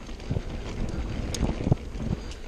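Wind rushing over the camera microphone and a mountain bike rolling fast down a dirt trail, with the bike knocking and rattling over bumps; a sharp knock about a second and a half in and the loudest thump near the end.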